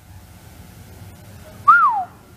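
Low room hum, then near the end a single short whistle by a person: one clear note that rises briefly and then falls away.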